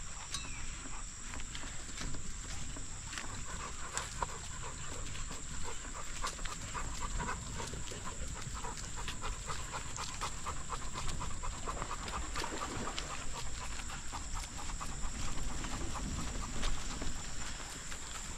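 A dog panting hard in a quick, even rhythm of short breaths.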